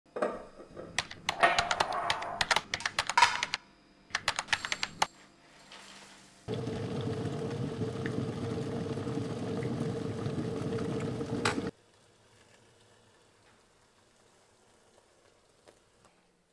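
Quick runs of sharp clicks and taps for the first few seconds, then a stainless-steel electric kettle at the boil, a steady rushing noise with a low hum lasting about five seconds and stopping abruptly with a click. Faint room tone follows.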